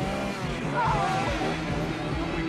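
A car engine running hard under a steady low hum, with a brief high squeal just under a second in, in a film soundtrack mixed with music.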